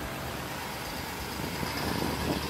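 Ford F-250 Super Duty's Power Stroke diesel V8 running steadily as the pickup pulls a loaded boat trailer up a ramp.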